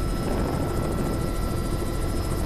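Helicopter cabin noise heard from inside: a steady drone of rotor and engine with thin, steady high whines on top.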